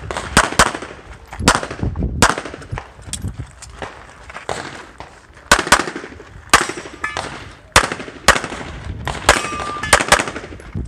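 Pistol shots fired on a practical-shooting stage, about a dozen in quick pairs and singles with short gaps between strings.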